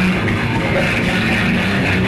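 Live metal band playing loud and steady: electric guitars over bass and drums.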